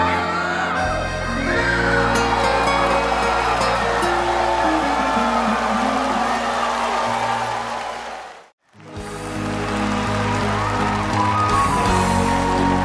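Live band music without singing: the instrumental close of a Vietnamese bolero duet, with held notes and chords. About eight and a half seconds in, it breaks off into a moment of silence, and the next song's instrumental intro begins.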